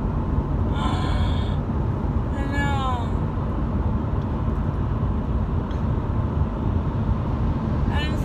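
Steady low road rumble of a moving car, heard from inside the cabin. About two and a half seconds in comes a short vocal sound that falls in pitch.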